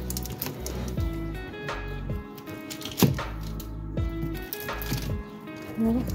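Background music with a steady bass beat, with one sharp click about halfway through.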